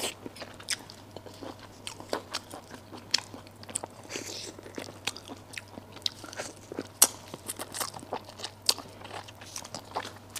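Close-miked eating of a braised duck head: sharp, irregular crunches and bites as bone and cartilage are bitten, with wet chewing between them. The loudest snap comes about seven seconds in.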